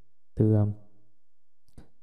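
A man's voice speaking a single word in Vietnamese, then a pause with a few faint clicks near the end.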